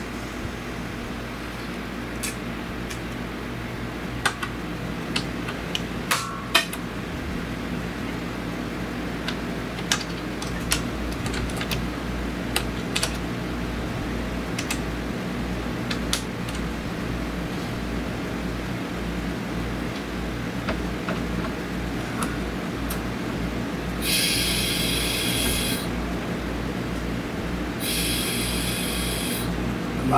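Scattered clicks of hand tools on metal under the hood, then two hisses of compressed air, each about two seconds long, near the end: air being fed into the cooling system through a pressure tester at the coolant reservoir to check the repaired hose clamp for leaks. A steady low hum with a pulsing beat runs underneath.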